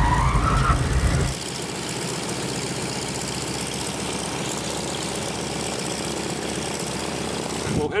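A Ford Tri-Motor's radial aircraft engine running with its propeller turning, heavier for about the first second, then a steady, even run.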